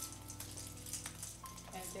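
Crackly rustling of a Christmas garland strand being handled and wound around an artificial tree, over quiet background music.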